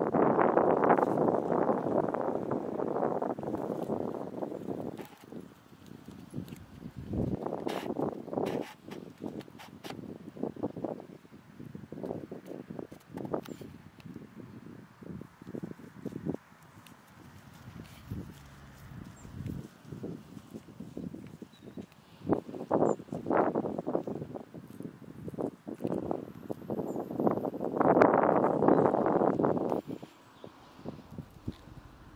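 Sheep grazing and moving in grass close by: irregular short tearing and crunching sounds. A longer stretch of louder rustling runs through the first few seconds and comes back near the end.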